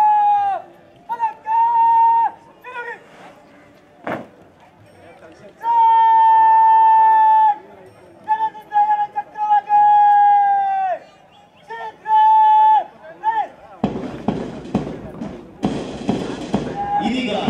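A parade commander's drawn-out shouted words of command. Each call is held long on one high pitch and drops away at the end, with pauses between them. A single sharp knock comes about four seconds in, and a broad rushing noise takes over near the end.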